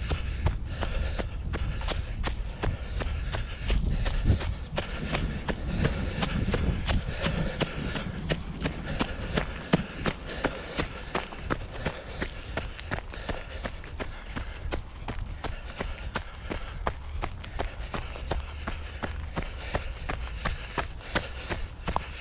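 A runner's footsteps on a woodland trail, an even stride of about three steps a second.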